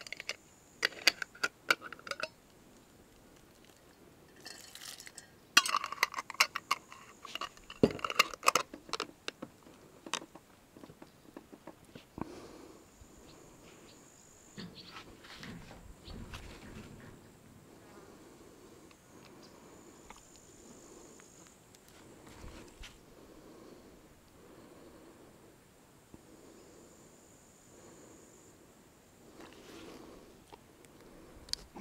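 Metal twist-off lids being screwed onto glass jars of cucumbers: bursts of clicking and scraping of metal on glass in the first ten seconds or so. After that, a fly buzzing around faintly.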